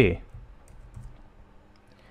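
A few faint, scattered computer keyboard keystrokes as code is typed.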